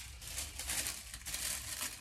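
Tracing-paper pattern piece and cotton fabric being handled and lifted, a soft, continuous paper crinkling and rustling.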